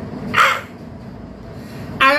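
A man's single short, harsh, rasping vocal outburst about half a second in, over a steady low drone.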